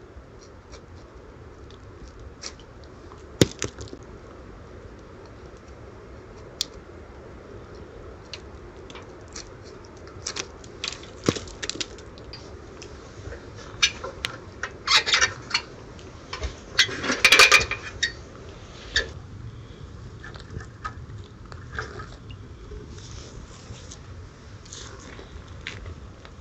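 A handheld sickle sawing and scraping at a chaga conk on a birch trunk: scattered knocks and rasping strokes that come in denser runs past the middle, the loudest run about two-thirds of the way in. A single sharp knock comes a few seconds in.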